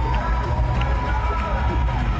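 Live arena concert music over the PA, heard from the stands: heavy steady bass under a long held high note that ends near the close, with crowd noise around it.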